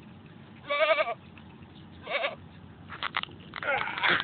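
A goat bleating in distress, its horns caught in a wire fence. There is a wavering bleat just under a second in and a shorter one about two seconds in.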